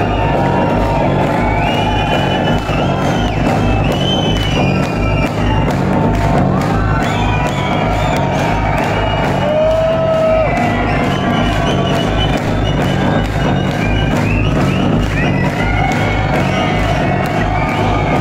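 Live electronic dance music played loud through a concert hall PA, with heavy bass and a steady kick-drum beat. The crowd cheers and whoops over it.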